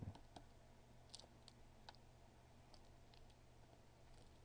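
Near silence: room tone with a few faint, scattered clicks of a stylus tapping and writing on a pen tablet.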